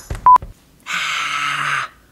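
A short, loud electronic beep about a third of a second in, then, after a brief gap, about a second of harsh static-like electronic noise with a low hum that cuts off suddenly.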